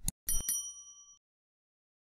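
Subscribe-button animation sound effect: two quick clicks, then a bright bell ding that rings out and fades within about a second.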